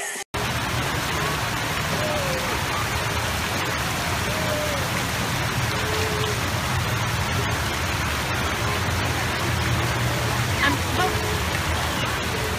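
Water spilling over the concrete steps of small fountain cascades, a steady rushing. Faint voices come through it now and then.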